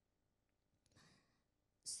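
Near silence, broken about a second in by a faint breath taken close to a handheld microphone.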